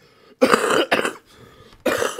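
A man coughing, a run of loud coughs starting about half a second in and again near the end: a coughing fit brought on by hard laughter.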